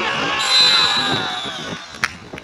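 Several men shouting and cheering together just after a goal is scored, fading towards the end. A long shrill high note, the loudest sound, comes in about half a second in.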